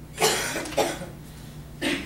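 A person coughing: two short coughs close together in the first second, then another starting near the end.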